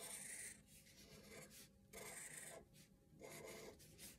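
Black felt-tip permanent marker drawing on paper: a few faint, short scratchy strokes of about half a second each, with pauses between.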